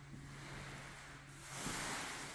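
Faint soft swishing of a T-bar applicator being pushed through wet polyurethane on a hardwood floor, swelling briefly near the end, over a steady low hum.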